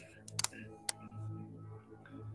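A few sharp computer keyboard clicks: a quick cluster of three about half a second in and a single click near one second. Faint background music plays softly underneath.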